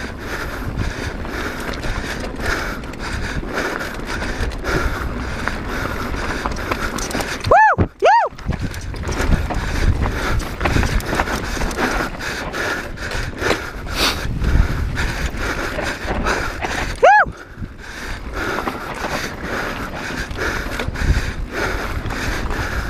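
Mountain bike rattling and clattering over a rocky trail at speed, with steady wind noise on the camera microphone. Three short rising-and-falling squeals cut through: two in quick succession about eight seconds in and one more near seventeen seconds.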